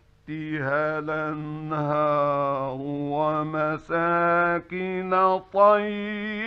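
A male Quran reciter chanting in the melodic, ornamented tajweed style. He holds long wavering notes in phrases, with short breaths between them.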